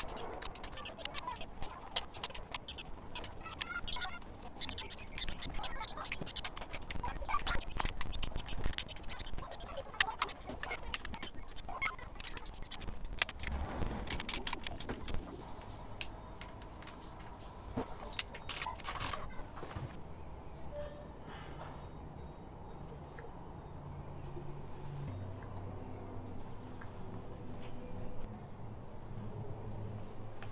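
Ratcheting torque wrench clicking in short runs with metal tool handling as the rocker-cover bolts are tightened. No torque-limit click-over is heard: the wrench was not set correctly and the bolts are being overtightened.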